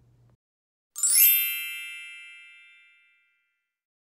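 A single bright chime sound effect added in editing. It opens with a quick upward shimmer and rings out, fading away over about two seconds.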